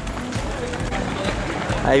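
Wind rumbling on a handheld camera's microphone outdoors, with runners' footsteps on the road; a man's voice starts just at the end.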